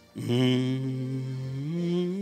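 A slow hymn being sung: after a short pause, one long held low note begins and rises in pitch near the end.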